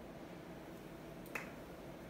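Quiet room tone with a single short, sharp click about a second and a half in.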